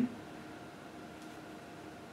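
Faint steady hiss with a low, even hum in a small room: room tone, with no distinct event.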